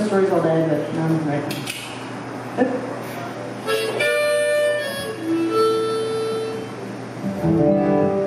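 Acoustic guitar notes and a chord plucked one at a time and left to ring, a second or so apart, after a voice briefly at the start.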